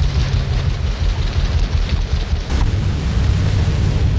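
Steady low rumble with hiss on a 1930s film soundtrack, with one sharp click about two and a half seconds in.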